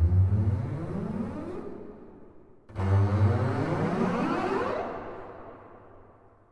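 Small section of double basses playing a glissando effect twice: each gesture starts low and slides upward in pitch, the second one about three seconds in, each fading away into a long reverberant tail.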